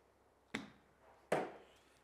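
Two sharp knocks about three-quarters of a second apart, the second louder, from an indoor putting game: a putter striking an orange practice golf ball and the ball knocking against something hard.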